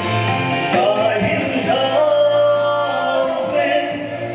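Gospel singing with instrumental accompaniment: a slow song of long, held notes over a steady low bass.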